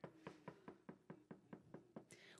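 Knuckles knocking on a free-standing stage prop door: a quick, faint, even run of raps, about five a second.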